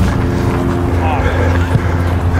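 A motor running steadily, a low, even drone that holds one pitch.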